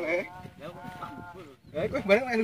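Men's voices talking indistinctly, with no other clear sound standing out.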